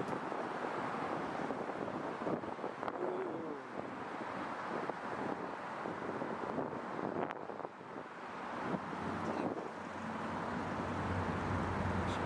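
City street noise of passing traffic, with wind on the microphone; a deeper rumble comes in over the last few seconds.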